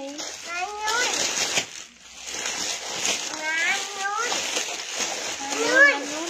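Rustling and crinkling of plastic-bagged jeans being handled, with short bursts of talking voices over it.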